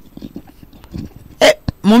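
A pause in dialogue, broken by one short burst of a person's voice about one and a half seconds in and a small click just after, with speech starting again at the very end.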